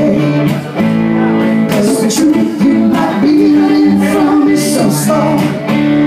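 Live band music: acoustic and electric guitars playing chords over congas, with a steady beat of hand-drum strokes.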